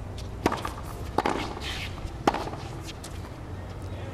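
Tennis ball struck by rackets three times in a short point, a serve and two shots, sharp pops about a second apart over steady low stadium ambience.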